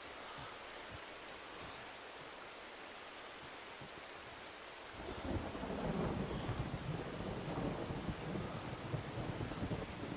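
Faint steady hiss, then about halfway through a low rolling rumble of thunder sets in and keeps going.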